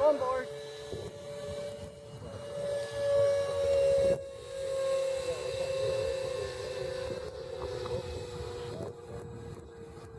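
The 64 mm electric ducted fan of an RC foam-board Saab Viggen jet in flight, giving a steady whine. It swells to its loudest about three to four seconds in, then slowly fades as the plane flies away.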